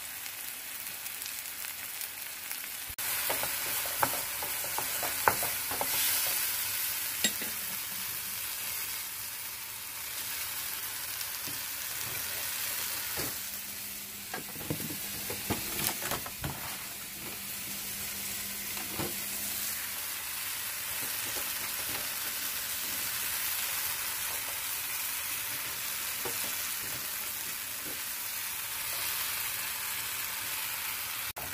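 Diced tomato, onion and jalapeño sizzling steadily in a frying pan, the sizzle getting louder about three seconds in. Scattered knocks and clatters of handling come through, mostly in the first third and again around the middle.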